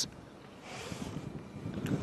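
Quiet outdoor background with faint wind noise on the microphone: a soft hiss swells and fades about a second in.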